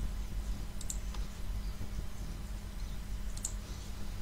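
Computer mouse clicks: a couple about a second in and another near the end, over a steady low hum.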